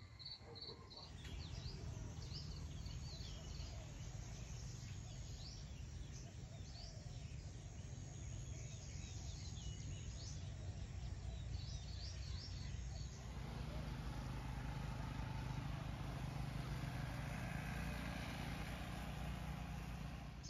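Rural outdoor ambience: many short bird chirps over a thin, steady insect tone. About two-thirds of the way through, it gives way to a steadier, fuller noise with a low rumble.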